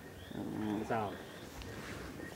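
A person's voice, quieter than the interview speech around it, heard briefly in the first half. Behind it are faint, repeated high chirps.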